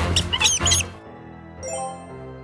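Mouse squeaks, a quick run of short high chirps in the first second, over background music that carries on alone afterwards.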